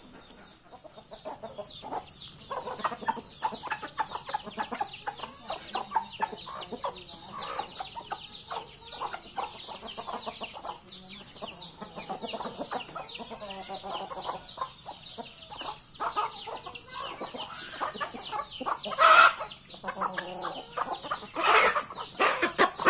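A flock of chickens clucking, with chicks giving a rapid stream of high, falling peeps throughout. One louder, sharper call comes near the end.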